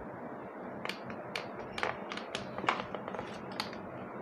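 A series of soft plastic clicks and taps, about two a second, from pressing the push button and handling the plastic handle of an electric mosquito racket; the racket itself stays dead, with no zapping from the grid.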